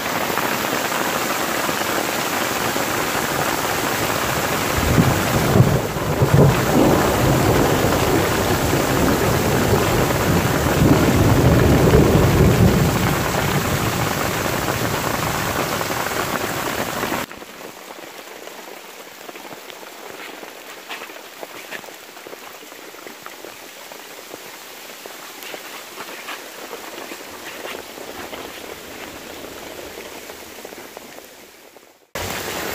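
Heavy hail and rain pelting the trees and forest floor in a loud, dense hiss, with a long low rumble of thunder swelling through the middle. About two-thirds of the way in, the sound drops abruptly to a much quieter patter with scattered small ticks.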